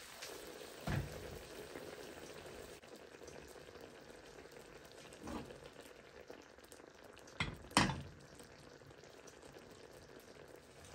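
Chickpea patties simmering in gravy in a frying pan, a faint steady bubbling sizzle. A few brief knocks break in, once about a second in, once around the middle and twice close together near the end, the last the loudest.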